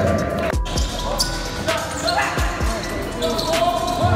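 A basketball bouncing on a hardwood gym court a few times, under background music and voices.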